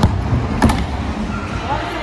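BMX bike knocking onto and dropping off a skatepark ledge during a grind attempt: a knock at the start, then a sharper metallic clank about two-thirds of a second in as it comes down, with the rumble of tyres rolling on concrete.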